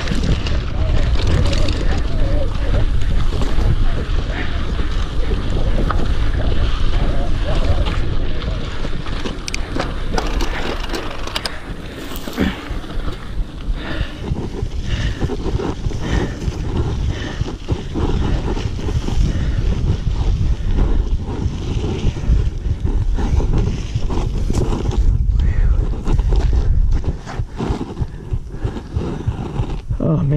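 Wind buffeting the microphone of a handlebar-mounted action camera on a mountain bike riding a dirt singletrack, with frequent clicks and rattles from the bike over the trail. The noise eases off in the last few seconds.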